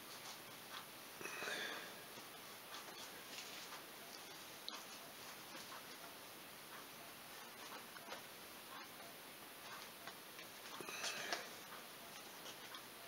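Faint rubbing of a towel-wrapped squeegee pushed over wet vinyl graphics on a plastic ATV fender, squeezing the water out from behind it. Two louder rubbing strokes come about a second and a half in and near the end, over a steady background hiss.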